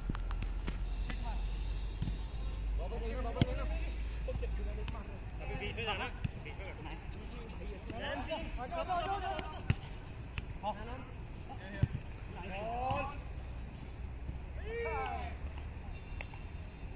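Players calling out to each other across a five-a-side football pitch, their voices faint and scattered, with a few sharp knocks of the ball being kicked.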